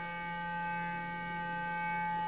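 Clarisonic sonic foundation brush running, a steady electric hum as it is worked over the face.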